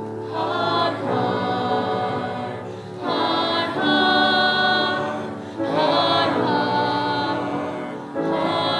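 A young woman singing a musical-theatre solo: three sung phrases, each opening with a slide in pitch and settling on a long held note, over steady low sustained accompaniment.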